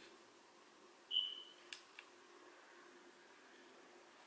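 A short, high-pitched squeak-like tone about a second in, dropping slightly in pitch, then two sharp clicks, over faint room tone.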